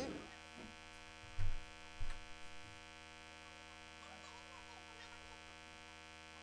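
Steady mains hum and buzz in the recording, broken by two short low thumps about one and a half and two seconds in.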